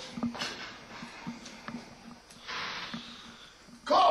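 A man breathing hard with effort while squeezing a heavy hand gripper: a forceful breath about two and a half seconds in, then a sudden loud grunt right at the end.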